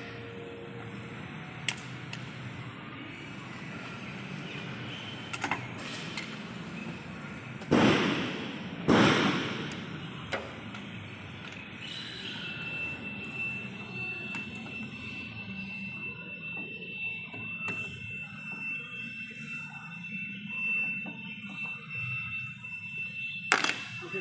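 Workshop clatter of steel hand tools on a rubber conveyor belt during splicing: a few light knocks and two loud thuds about eight and nine seconds in. From about halfway a steady high-pitched tone runs under it.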